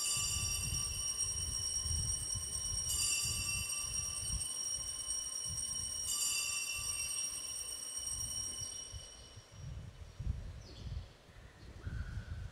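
Altar bells rung three times at the elevation of the host after the consecration, each ring a bright, high, multi-toned jangle starting about every three seconds and fading out around nine seconds in. A low rumble runs underneath.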